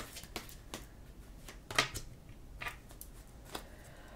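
Tarot cards being handled in the hand: a handful of soft, separate taps and flicks, the sharpest just before two seconds in.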